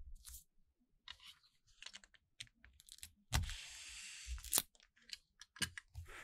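Plastic shrink wrap on a boxed album crinkling and rustling as the album is handled and turned, with a longer crinkle about three and a half seconds in and a few soft thumps.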